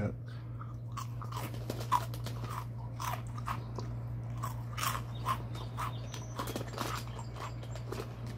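A person chewing a crunchy snack close to the microphone: irregular crunches, the sharpest about two seconds in.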